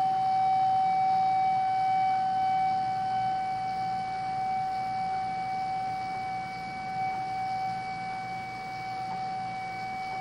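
Jinashi shakuhachi (Japanese end-blown bamboo flute) holding one long, steady note that slowly fades, in the style of zen honkyoku playing.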